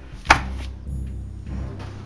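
Dramatic background score: low sustained notes with a single sharp percussive hit about a third of a second in.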